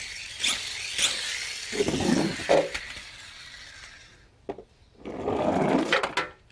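Plastic toy cars rolling down a cardboard ramp with a rattling hiss of wheels on cardboard, then knocking and clattering as they land among other toys in a metal basin; a sharp click comes about four and a half seconds in and another clatter near the end.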